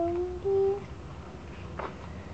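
A young child humming two held notes, the second a little higher, then a short papery swish of a magazine page being turned near the end.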